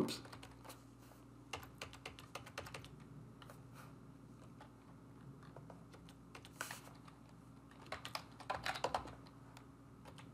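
Computer keyboard typing quietly, keystrokes coming in scattered runs with short pauses, over a faint steady low hum.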